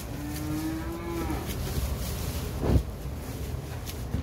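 A calf moos once, a single call of about a second and a half, then a short thump follows about a second later.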